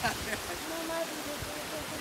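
Shallow stream running over rocks: a steady rush of water.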